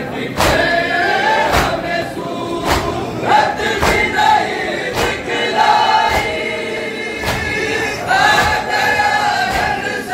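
A crowd of men chanting a Muharram lament (noha) together. Sharp beats land about once a second, typical of the hand strikes of chest-beating matam.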